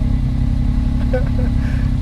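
Can-Am Maverick X3's three-cylinder engine idling steadily.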